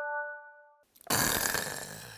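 An edited chime sound effect rings on as a few steady, evenly spaced tones and cuts off under a second in; after a short gap comes a loud hissing burst about a second long.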